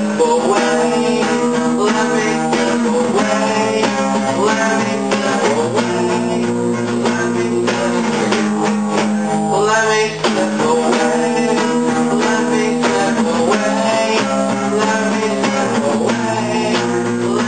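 Acoustic guitar strummed steadily in a continuous run of chords, with a brief break in the strumming about ten seconds in.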